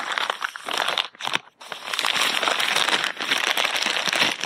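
Plastic poly mailer being cut with scissors and opened: short broken snips and crackles for the first second or so, then continuous crinkling of the plastic from about two seconds in as it is pulled open around the books.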